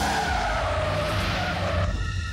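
A car's tyres squealing in a long skid, the squeal falling in pitch and then holding, over the low rumble of the car.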